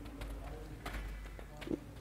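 Faint footsteps of a child running on artificial turf, a few soft taps over a low steady background.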